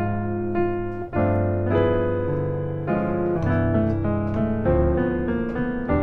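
Piano playing jazz chord voicings: a held D-flat major seventh chord, then about a second in, a run of new chords struck about every half-second, moving up and down through the C major scale as a fill over a long major seventh chord.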